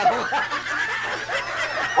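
A man and a woman laughing together, in short, broken-up bursts.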